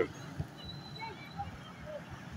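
Faint outdoor street background: a low, steady rumble of traffic, with a few faint distant sounds and a brief thin high tone about half a second in.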